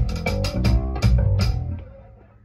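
Playback of a multitrack session recording through studio monitors: an electric bass guitar plays sustained low notes, with a couple of sharp drum hits. The playback fades down about one and a half seconds in.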